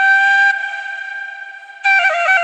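Side-blown bamboo flute holding one long note that fades away, then a new phrase starting abruptly near the end.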